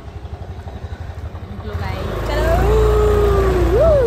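A motor vehicle engine running close by with a fast low throb, growing louder about two seconds in. Over it, a drawn-out voice tone holds, then swoops up and back down near the end.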